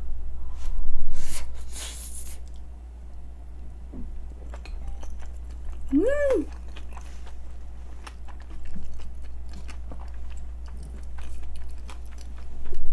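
Close-miked chewing of a mouthful of rice with avocado and pollock roe (myeongran), with many small wet clicks and two loud noisy rushes between one and two seconds in. A short hummed "mm!" of enjoyment rises and falls about six seconds in.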